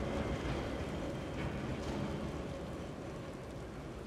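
Steady rain falling on a city street, with a low rumble underneath, slowly getting quieter.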